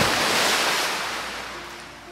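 Ocean waves: a loud surging rush of surf that sets in suddenly and then slowly fades away.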